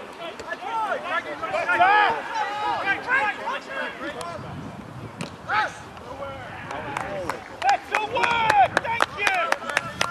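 Rugby players shouting calls on the pitch, several voices overlapping, at a distance and without clear words, as a scrum breaks up and play moves on. A run of sharp clicks or knocks comes near the end.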